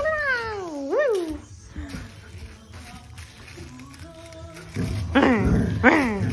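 Border collie whining and howling in long, high, sliding calls that rise and fall in pitch. They fade out about a second and a half in and start again loudly near the end.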